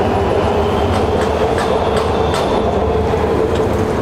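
Washington Metro train running on the elevated track overhead: a steady rumble with a held whine and a few faint clicks of the wheels.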